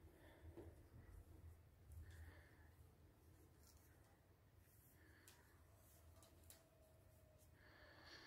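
Near silence: quiet room tone, with a few faint soft handling sounds in the first couple of seconds as yarn and circular knitting needles are worked by hand.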